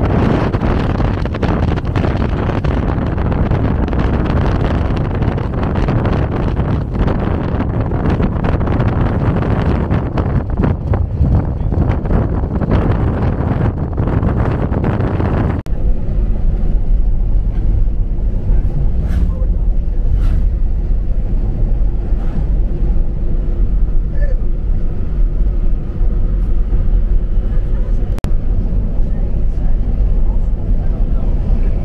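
Wind rushing over the microphone at an open side window of a moving Ram 2500 pickup, over the rumble of its Cummins diesel and tyres on the road. About halfway through, the wind noise drops away abruptly, leaving the lower, steadier rumble of the truck driving on.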